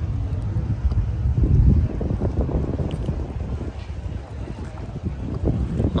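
Wind buffeting the microphone: a low, uneven rumble, gusting loudest about one and a half seconds in.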